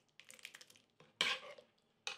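Metal ladle stirring and scooping thick bean stew in a pot: light clicks and scrapes, with one louder clatter a little past halfway.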